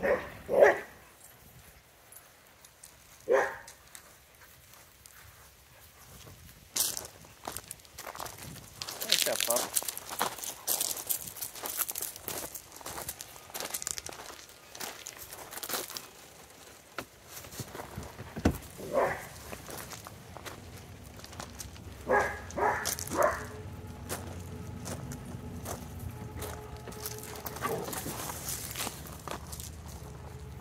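Dogs barking in short single barks, with a quick run of three barks about 22 seconds in. In the middle comes a stretch of footsteps crunching on gravel.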